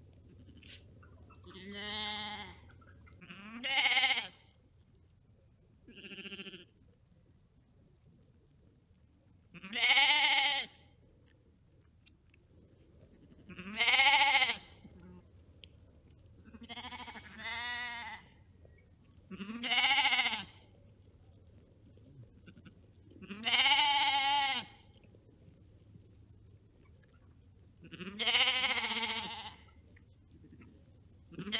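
Sheep bleating: about ten separate baas a few seconds apart, each rising and then falling in pitch with a quaver in it.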